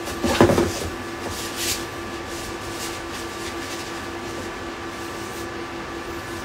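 A few handling knocks and rustles in the first second or so as small packing items are picked up and moved, then a steady room hum with a faint, evenly pulsing tone.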